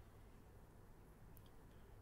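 Near silence: faint steady microphone hum and room tone, with one faint click about one and a half seconds in.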